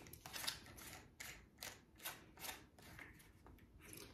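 Hard plastic parts of a flea trap handled and twisted together: a string of faint clicks and scrapes as the pumpkin-shaped cover is fitted and tightened.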